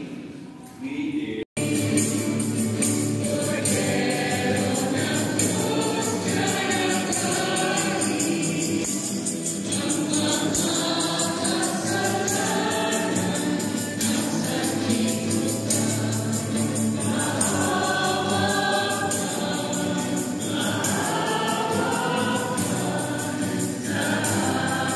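Congregation singing a hymn together, many voices at once. The singing takes over after an abrupt break about a second and a half in, and then runs on steadily.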